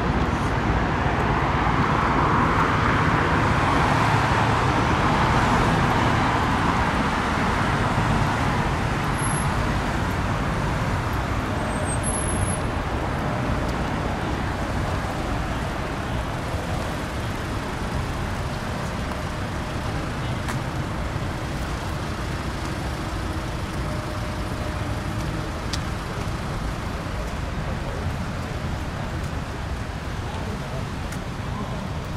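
City road traffic noise: a steady rumble of passing cars, louder for the first several seconds as traffic goes by close, then easing to a lower steady level.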